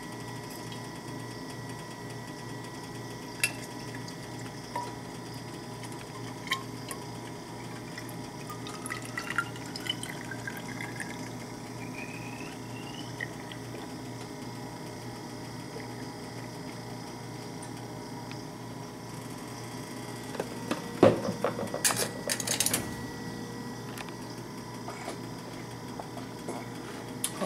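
Water filling a Stanley stainless steel vacuum thermos, with the pitch of the filling rising over a few seconds about a third of the way in. A few loud knocks of handling come near the end.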